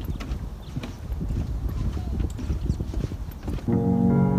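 Irregular knocks and clicks over a low rumble, with music starting just before the end.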